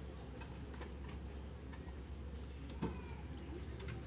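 Quiet room tone of a large hall: a low steady hum with scattered faint clicks and ticks, and one louder knock about three seconds in.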